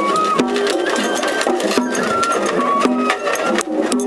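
Japanese festival float music (matsuri-bayashi): a high flute melody of held, stepping notes over a lower line and dense, continuous percussion strokes from drums and small hand cymbals.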